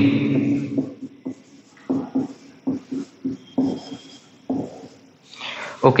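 Felt-tip marker writing on a whiteboard: a quick run of short, uneven strokes and taps against the board, with one brief thin squeak of the tip partway through.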